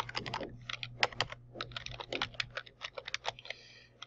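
Computer keyboard typing: quick, irregular runs of key clicks as a word is corrected and typed out, over a low steady hum.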